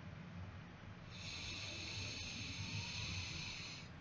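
A man's long, slow breath close to the microphone: a soft hiss starting about a second in and lasting nearly three seconds, over a faint low hum.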